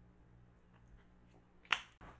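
Quiet low steady hum, then a single sharp snap about three-quarters of the way through.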